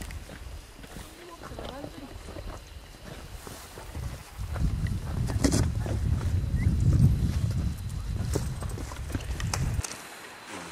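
Wind buffeting the microphone: a gusty low rumble that grows loud about four seconds in and cuts off abruptly just before the end.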